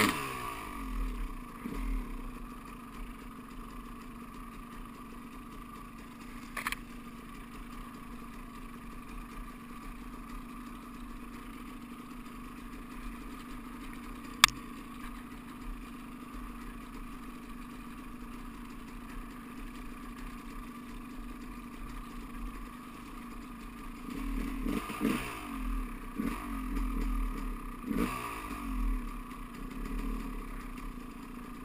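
Dirt bike engine running at a steady throttle, revving up and down in quick rises and falls near the start and again through the last several seconds. A sharp knock comes about halfway through.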